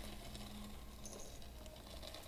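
Faint pattering of fine glass frit being sprinkled from a jar into a ceramic bisque tile mold.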